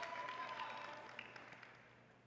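Audience applause dying away to quiet, with a held high note from the crowd ending about half a second in.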